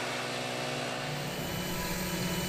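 Backpack leaf blower running steadily, its air blast clearing dust and chaff out of a baler's drive lines.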